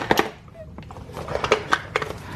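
Hands handling a small cardboard gift box, pulling loose its ribbon and opening the flaps: soft rustling with a few light clicks and knocks, the clearest right at the start and about a second and a half in.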